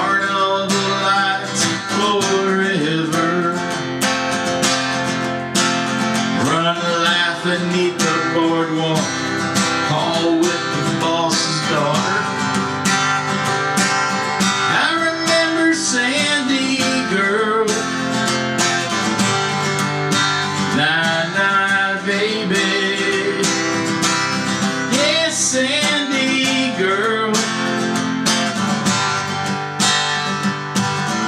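Steel-string acoustic guitar played solo: a steady strummed accompaniment with picked melody notes.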